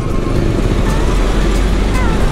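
Road traffic: a TransJakarta city bus drives away with a steady low engine sound, among passing cars.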